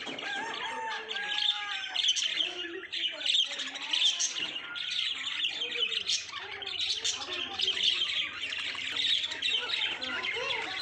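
A flock of budgerigars chattering and chirping, many short overlapping calls at once in a continuous warble.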